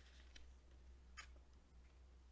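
Near silence: the faint rustle and a few light clicks of a glossy booklet page being turned by hand, the sharpest click a little past a second in, over a steady low hum.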